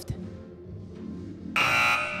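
A game-show buzzer going off: a sudden loud, steady electronic buzz that starts about one and a half seconds in. It signals that a contestant has buzzed in to answer.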